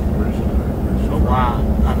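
Steady low rumble of a heavy excavator's diesel engine running, with a voice speaking briefly in the second half.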